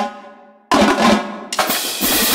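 Notation-software playback of a marching drumline score: a single tenor drum stroke rings out and decays, then about 0.7 s in a sudden loud barrage of extremely fast, dense drumming from the snare, tenor and bass drum lines.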